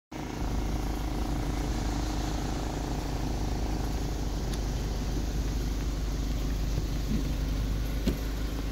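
Steady low rumble with a faint steady hum, unchanging throughout.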